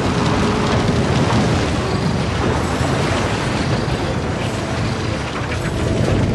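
Sound effects for a martial-arts energy attack in a fantasy fight: a loud, steady rumble with a dense rattling clatter, as of a mass of flying debris or blades rushing through the air.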